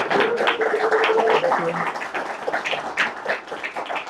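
Audience applauding: dense, overlapping clapping that thins out towards the end.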